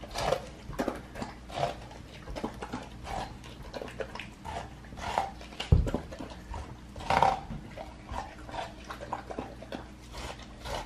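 A Bernedoodle eating a half watermelon, biting and slurping the wet flesh in irregular bursts, with a single low thump about six seconds in.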